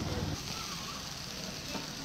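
Bamboo-skewered frogs sizzling on a wire grill over hot charcoal, a steady hiss. A low rumble drops away about a third of a second in.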